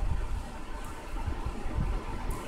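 Low, uneven rumbling and soft bumps of handling noise close to the microphone, as a plastic bottle is moved about in front of it.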